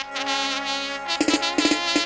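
Stage band music of a jatra performance starting abruptly: a held instrumental note, joined by a few drum strokes from about a second in.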